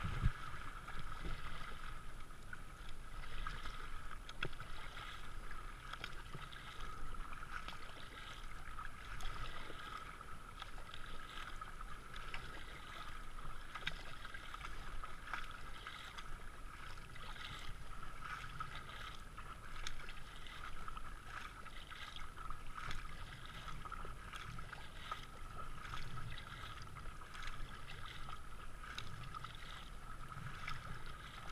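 Water rushing and splashing around a racing kayak as it is paddled down a river rapid, with the paddle blades dipping and splashing irregularly, and a single knock right at the start.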